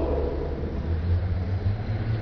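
A low, steady rumble with no speech over it.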